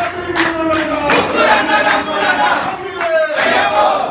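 A group of men loudly chanting Ayyappa devotional song in unison, with handclaps throughout.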